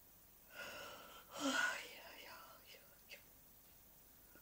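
A woman whispering a few breathy words for about two seconds, starting about half a second in. Two faint clicks follow near the three-second mark.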